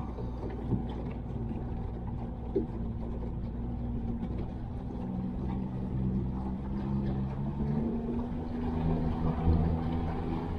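Small boat's outboard motor running under way, a steady low hum whose pitch shifts slightly past the middle, over water and wind noise.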